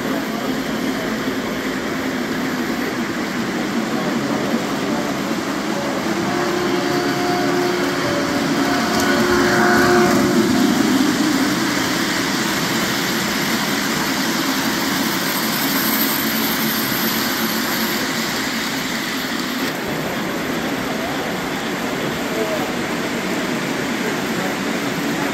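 O-gauge three-rail model trains running on a club layout, a steady rumble of wheels on track, under the chatter of a roomful of people. A steady tone sounds in a few short blasts about seven to eleven seconds in.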